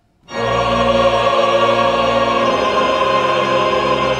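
Choir singing sacred classical music: after a brief silence, a loud full chord enters about a third of a second in and is held steadily.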